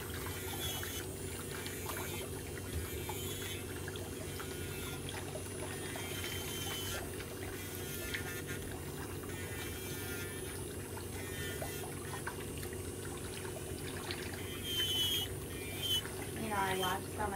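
Electric nail drill running with a steady hum, its cone-shaped bit grinding down thickened, impacted ram's horn toenail buildup.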